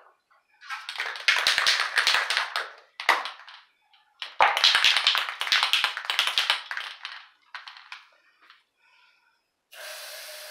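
An aerosol spray-paint can being shaken, its mixing ball rattling in two bouts of about two and a half seconds each, with short rattles after each. Near the end a steady spray hiss starts.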